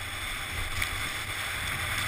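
Wind buffeting the microphone of a camera riding with a snowboarder, over the hiss of the snowboard sliding across groomed snow: a steady rushing noise with a low rumble, and one brief click just under a second in.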